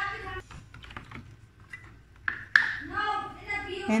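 A metal spoon clicking lightly against a plastic tub while sugar is stirred into tea, then two sharper knocks about two and a half seconds in as the spoon is tapped or set down. A voice is heard briefly at the start and after the knocks.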